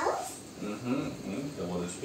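Indistinct low voices murmuring, with no clear words.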